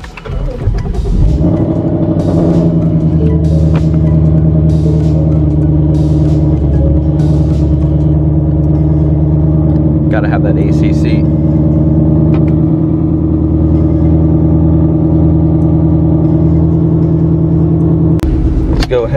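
Ford Mustang GT's V8 engine started with the push button, catching within the first second and settling into a steady fast idle around 1,200 rpm.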